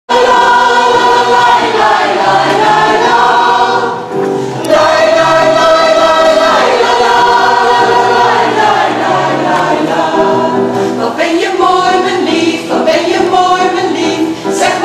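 Mixed choir of men and women singing in harmony, holding long chords. There is a short break about four seconds in before the voices come back in.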